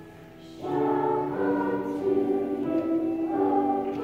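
Children's choir singing; the singing breaks off briefly at the start and comes back in about half a second in.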